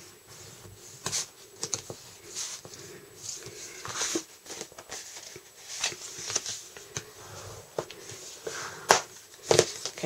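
Heavyweight cardstock being folded over along its score lines and creased by hand: papery rustles and scrapes with a few sharp taps, the sharpest about nine seconds in.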